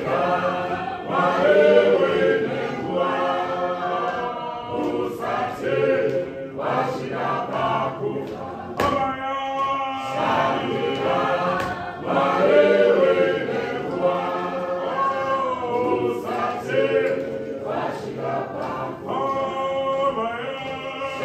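Church choir singing a processional hymn, the melodic phrase coming round again about every ten seconds.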